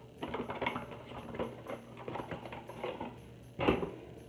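A paperboard product carton being handled and opened to slide out a plastic tube of cleansing gel: a run of small crinkles, taps and scrapes, then one louder knock near the end.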